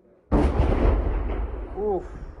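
Artillery shell exploding nearby: a sudden loud blast about a third of a second in, its deep rumble rolling on and slowly fading.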